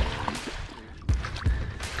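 Background music, with water splashing as a hooked fish thrashes at the surface.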